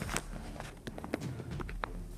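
A handful of light, sharp clicks and taps at irregular spacing, about six in two seconds, over a low steady room hum.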